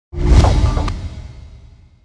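A swoosh sound effect with a deep low end that starts suddenly and fades away over about a second and a half, with a short click partway through.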